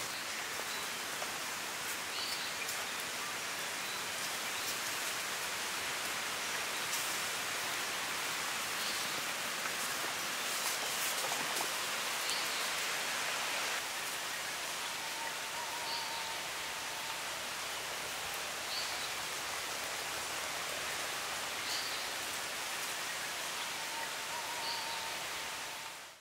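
Outdoor forest ambience: a steady hiss with a short, high bird call every few seconds, and a brief trilling call twice in the second half.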